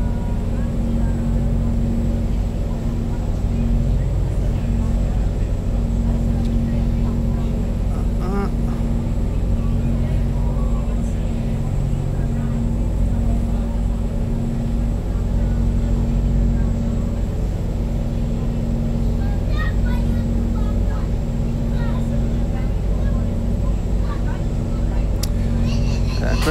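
A steady low hum throughout, with a few faint rustles of book pages being leafed through while a passage is searched for.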